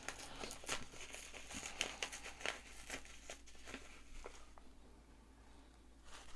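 A small brown paper pouch of dried herbs being opened and handled, with faint, irregular crinkles and rustles that die away about four and a half seconds in.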